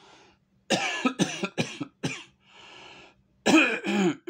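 A man coughing, a quick run of about four coughs.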